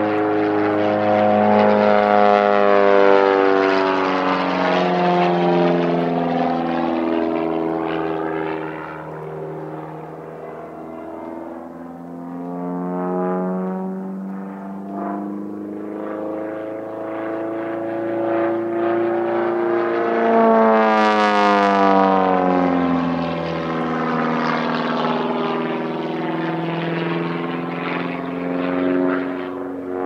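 Aerobatic propeller plane's engine and propeller overhead, the pitch repeatedly falling and rising as it dives, climbs and turns. It dips quieter about ten seconds in and swells to its loudest, harshest pass about two-thirds of the way through.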